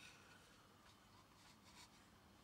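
Near silence: room tone, with a few faint taps.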